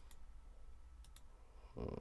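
A few faint computer mouse clicks, about three of them, one at the start and two close together about a second in.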